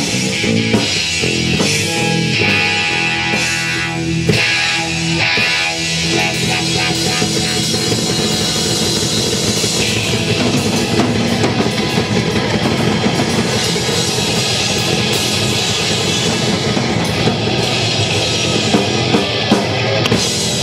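Live rock band playing an instrumental passage, with no vocals: two electric guitars through Marshall amplifiers over a Pearl drum kit, at a steady loud level.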